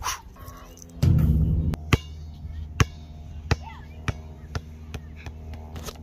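A basketball bouncing on a hard outdoor court after a missed shot, about six bounces coming quicker and fainter as it settles to rest, after a louder low burst about a second in. A steady low hum runs underneath.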